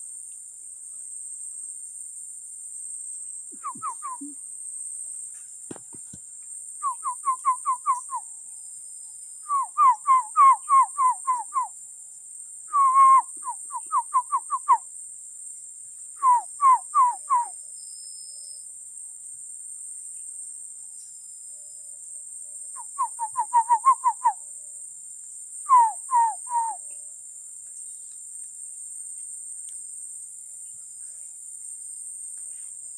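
A bird calling in repeated short phrases of five to seven quick, falling notes, with pauses of a second or more between phrases, over a steady high-pitched insect drone.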